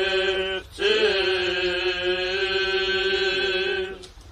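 Armenian Apostolic clergy chanting a liturgical prayer in long held notes, with a brief breath about three-quarters of a second in, then one long sustained note that ends just before the close.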